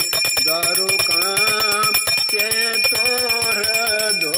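Brass puja hand bell rung rapidly and without pause, its clapper striking many times a second and its high ring held steady, over voices singing a devotional hymn.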